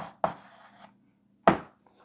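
Chalk on a blackboard: a couple of quick taps and short scraping strokes as a word is finished, then a single sharp tap about a second and a half in.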